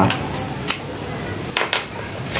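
About three light clicks and clinks of small metal motor parts being handled while a small desk fan's motor is worked on by hand.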